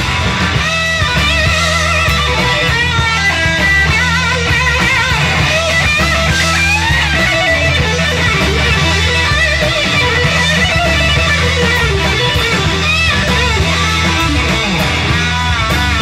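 Live rock band playing: an electric guitar lead with wavering, bent notes over bass guitar and drum kit.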